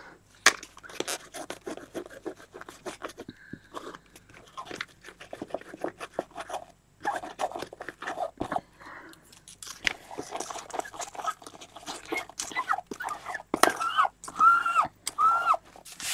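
Fingertips rubbing dried masking fluid off a painted paper page, a dense irregular scratchy crackle, with a few short squeaks near the end.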